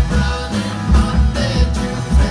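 Live rock band playing: electric guitars, bass and drums with a steady driving beat, sung into a microphone.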